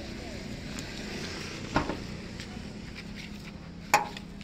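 Steady outdoor background noise with two sharp knocks: one a little under two seconds in and a louder one at the very end.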